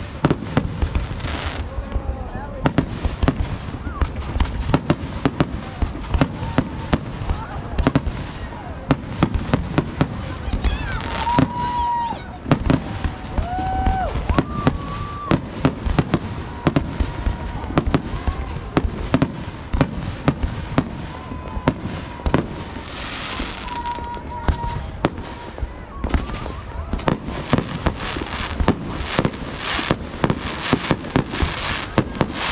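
Aerial firework shells bursting overhead in a rapid, unbroken run of sharp bangs, several a second.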